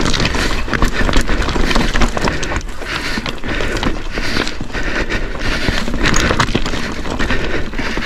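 Whyte S150 full-suspension mountain bike rolling fast over loose stones and gravel. The tyres crunch and the bike rattles and knocks over the rocks in quick, irregular clatters, over a steady low rumble of wind on the action camera's microphone.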